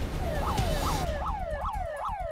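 Electronic alarm siren sounding inside a vehicle cabin: a fast repeating yelp, its pitch sweeping up and down about three to four times a second.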